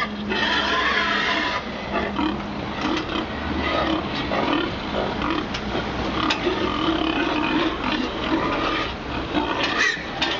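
Many pigs crammed into a multi-deck livestock truck squealing and grunting in a dense, continuous din as they are jabbed with a long stick.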